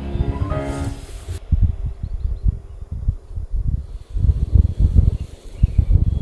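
Background music that ends about a second and a half in, followed by gusting wind buffeting the microphone, a low, uneven rumble.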